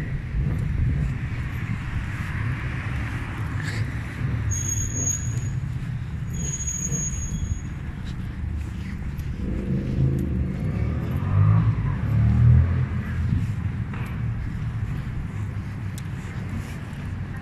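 City street traffic running steadily, with a motor vehicle passing more loudly in the second half. Two short, high, thin tones sound a few seconds in.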